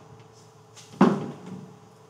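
A single knock about a second in, fading quickly: chalk striking a blackboard as a word is finished. A faint steady hum runs underneath.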